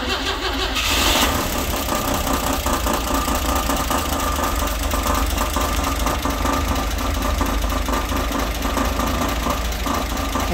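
Chevrolet 235 inline-six idling steadily just after starting, with a rattle from the loose valve cover, whose bolts are out.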